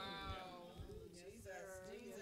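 Faint, drawn-out voices from the congregation, wavering in pitch, with no words picked out.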